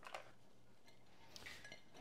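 Near silence, with a few faint clinks from a glass bowl being handled, about a tenth of a second in and again around one and a half seconds in.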